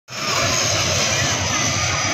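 Twin-turboprop airliner flying low overhead, its engines and propellers making a loud, steady noise.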